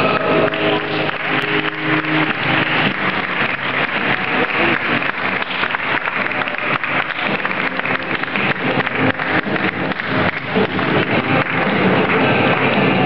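Audience applauding: dense, continuous clapping, with music faintly beneath it near the start.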